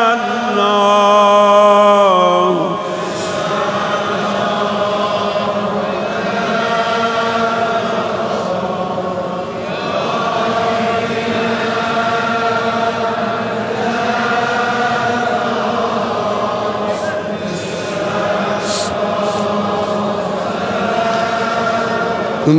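A man's chanted voice holding a long note, ending about two and a half seconds in, then a large congregation of many voices chanting together in a reverberant hall, swelling and ebbing in waves.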